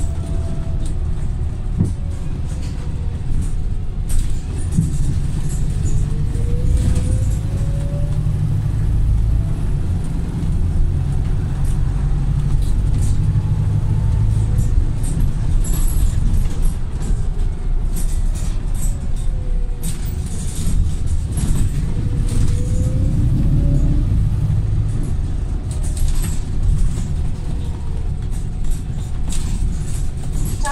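Volvo B5TL double-deck bus running, heard from inside the passenger saloon: a steady low engine and road rumble from its four-cylinder diesel. A faint whine drops and then rises in pitch, twice over, and short rattles come through the body.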